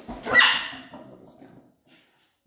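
Blue-and-gold macaw giving one loud, harsh squawk, about a second long, that fades out.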